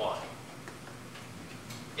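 A man's word ending, then a pause of faint room tone with a few soft, scattered ticks.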